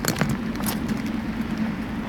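Steady low mechanical hum over a background rumble, with a few faint clicks in the first half-second.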